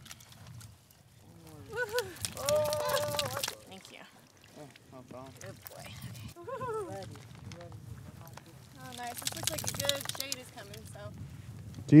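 Water poured from a large plastic jug for dogs to drink, splashing and sloshing in two spells, one about two seconds in and one near ten seconds.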